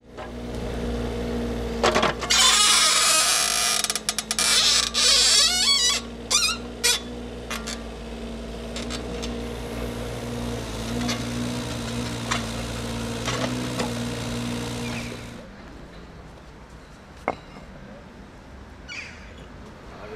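Kubota KX008 micro excavator's small diesel engine running steadily, with its bucket scraping and clattering through sand and soil for a few seconds early on and scattered clicks after. The engine sound cuts off abruptly about three-quarters of the way through, leaving a quieter background.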